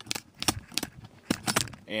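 A series of irregular sharp clicks and taps, about eight in two seconds, with no steady sound beneath them.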